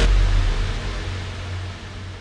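The fading tail of a dramatic TV-serial music sting: a noisy swell over a deep low drone, dying away steadily.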